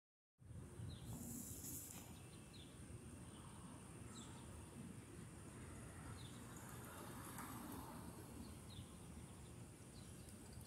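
Quiet outdoor ambience: a steady low background rumble with faint short chirps every second or two.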